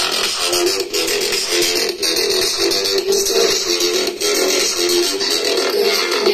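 Electronic music played through a small oval speaker driver from a Philips 40PFK4101/12 TV, running in free air without any enclosure. The sound is thin, with almost no bass.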